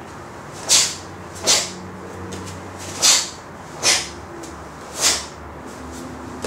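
Five short, sharp swishes from a taekwondo practitioner's dobok and body, one with each block and punch of the To-San pattern. They come roughly in pairs, a block then a punch, about a second apart.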